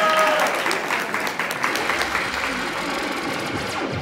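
Audience clapping scattered through crowd chatter, slowly thinning out; the last notes of a short musical jingle fade in the first half-second.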